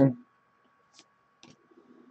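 Trading cards being handled and slid against one another in the hand: two faint clicks about half a second apart, then a few lighter ticks.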